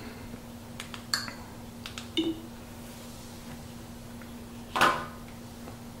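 A TV being switched over with its remote: a faint steady hum under a few short menu clicks with brief high blips, about one and two seconds in, then a short rush of noise near the end as the new channel comes up.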